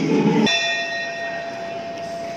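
Music cuts off about half a second in, and a single strike of the ring bell rings out and slowly fades: the bell starting the first round of a Muay Thai bout.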